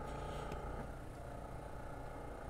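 Faint steady low hum and hiss of room tone, with a barely audible tick about half a second in.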